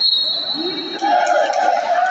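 Raised voices echoing in a sports hall, with a loud sustained shout in the second half. A steady high whistle tone trails off at the very start.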